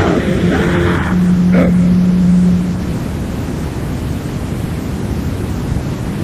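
Lo-fi cassette demo recording of heavily distorted extreme metal: a dense wall of distorted noise, with a low note held for about two seconds starting a second in.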